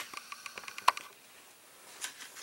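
Camera handling noise: a quick run of light clicks and ticks through the first second, with one sharper click just before the one-second mark, then faint room tone.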